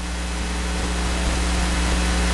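A steady low hum under a constant hiss, unchanging throughout, with a few faint steady tones above the hum.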